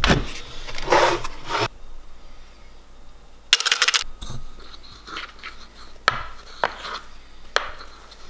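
Plastic tubs of whey protein powder being handled: a tub taken from a cupboard, then a plastic scoop scraping and digging into the powder, with short knocks and clicks of scoop and tub. A brief, louder rustling burst comes about halfway through.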